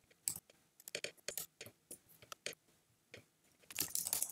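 Faint, irregular clicks of a computer mouse and keyboard, a dozen or so short sharp ticks, coming a little closer together near the end.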